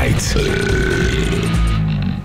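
A man belching one long, drawn-out burp over background music, starting about half a second in and lasting over a second.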